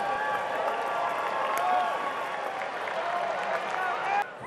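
Ballpark crowd noise: steady applause and chatter from the stands as a run scores.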